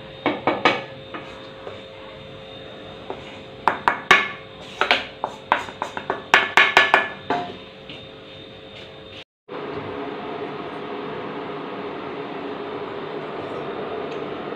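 Wooden spatula knocking and scraping against a metal bowl while stirring dry flour: irregular taps, some in quick runs of several strokes. After a sudden break about nine seconds in, a steady hum takes over.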